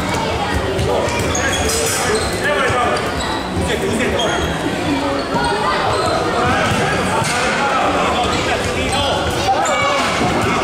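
A futsal ball being kicked and bouncing on a wooden sports-hall floor, a scattering of sharp thuds in a large echoing hall, over a steady background of children's and spectators' voices.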